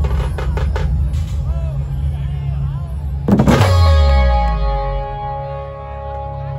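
Live dhumal band music through a loud sound system: a quick run of drum hits near the start, a heavy boom with a falling bass about three seconds in, then steady held notes.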